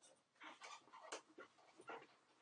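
Whiteboard eraser wiped across a whiteboard in several quick, faint rubbing strokes.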